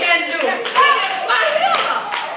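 Hand clapping kept up at a steady beat of about three claps a second, under a woman's loud voice carried through the pulpit microphone.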